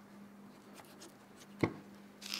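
A knife cutting and scraping through the last hide and soft nose cartilage of a skinned deer head, heard as a few faint ticks and scrapes, over a steady low hum.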